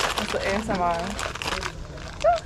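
Crinkling, rustling handling noise made of many small clicks, with a short voiced sound from a person about halfway through.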